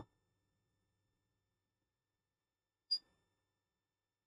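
Silence broken about three seconds in by a single short, high-pitched blip.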